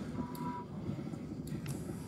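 Quiet large-room ambience with a brief faint single-pitched beep early on and a few light clicks.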